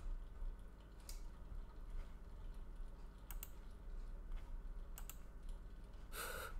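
A few faint, scattered clicks of a computer keyboard and mouse being operated.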